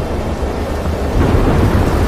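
Trailer soundtrack of heavy rain with a deep rumble of thunder, swelling slightly after the first second.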